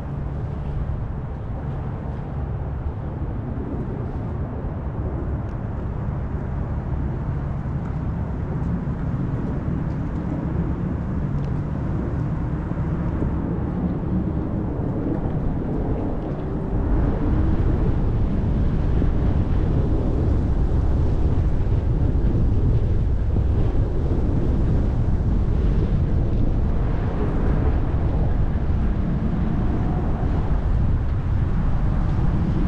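Wind buffeting the microphone, a rough low rumble that gets louder about seventeen seconds in.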